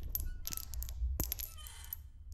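Quiet, scattered clinks and ticks of small hard objects, a few with a brief high ring, over a low rumble.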